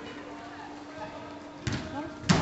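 Indoor football hall background with faint voices, then a sudden loud thump near the end, as of a ball being struck during play.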